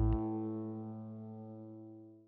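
Background music ending on one held chord that slowly dies away.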